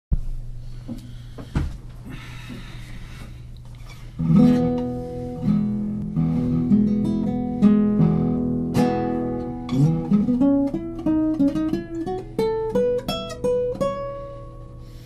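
Acoustic guitar. The first few seconds hold faint handling noise and a thump. From about four seconds in, ringing chords are played, and near the end they give way to single plucked notes that step upward in pitch.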